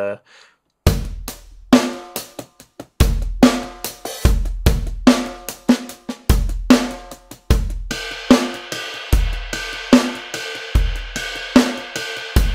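Drum-kit samples played by finger on a Maschine MK3's pads: a steady 16th-note groove of kick, snare and hi-hat begins about a second in. About eight seconds in, a ringing ride bell takes over the cymbal part as the beat moves into the B-section pattern.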